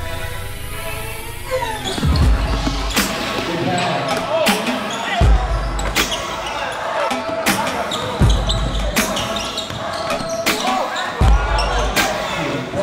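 Music plays for the first couple of seconds, then cuts to the live sound of a basketball game in a gymnasium: a basketball bouncing on the hardwood court in sharp, echoing thuds, with spectators' voices in the large hall.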